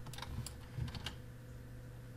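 Irregular light clicks of a computer mouse, a few a second, as points are placed with the pen tool, over a faint steady electrical hum.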